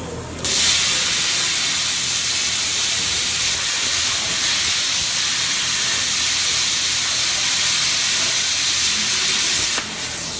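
Air plasma cutter cutting a metal plate: a loud, steady hiss of the arc and air jet that starts about half a second in and cuts off just before the end.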